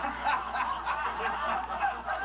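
Lecture audience laughing, many people chuckling at once.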